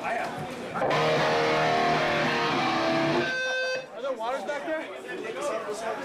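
Electric guitar chord strummed about a second in and left ringing for about two seconds before it is cut off sharply. Crowd chatter is heard before and after it.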